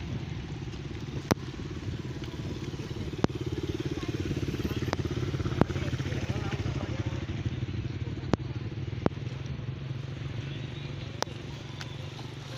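A motorcycle engine running as it comes up and passes close by, louder in the middle of the stretch, over a steady low rumble. Several sharp clicks stand out through it.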